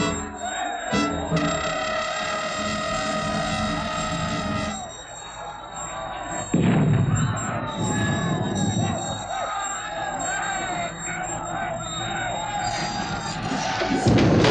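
Battle-scene soundtrack: music of long held notes for the first few seconds, then many voices shouting over it, with a sudden loud crash about six and a half seconds in.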